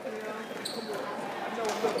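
Spectators' voices echoing in a gymnasium, with sneakers squeaking and the basketball knocking on the hardwood court as play starts from the jump ball. There is one short high squeak about a third of the way in and a cluster of sharp knocks near the end.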